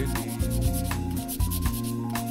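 Nail file scraping against an acrylic nail in repeated short strokes, shaping the freshly applied acrylic, over background music.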